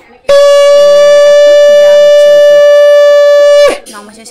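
Conch shell (shankha) blown in one long, steady, loud blast that starts just after the beginning and stops sharply near the end: ceremonial conch blowing. Voices talk faintly underneath.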